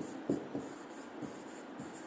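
Faint taps and short scratching strokes of a pen on an interactive whiteboard as a word is handwritten.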